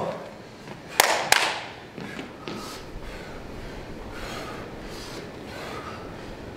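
Two sharp knocks about a third of a second apart, about a second in, as people get up from exercise mats on a hardwood gym floor; after them only faint rustling.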